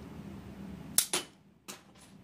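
Home-built LEGO Technic brick shooter firing: the trigger releases the rubber-band-powered red striker, which snaps forward and launches a LEGO brick bullet. A sharp plastic snap about a second in, followed at once by a second click and a fainter click shortly after.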